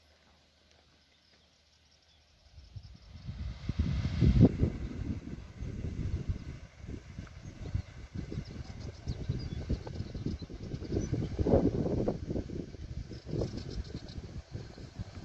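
Wind buffeting the microphone outdoors: near quiet at first, then from about two and a half seconds in a loud, uneven low rumble that rises and falls in gusts.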